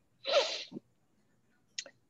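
A short, breathy burst of voice from a woman, a sudden noisy puff with a slight falling pitch lasting about half a second, then a brief faint breath sound just before she speaks again.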